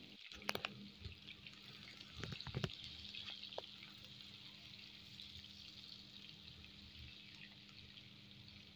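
Sliced onions frying in hot oil in a pan: a faint, steady sizzle of bubbling oil, with a few light clicks from a spatula stirring them in the first three seconds.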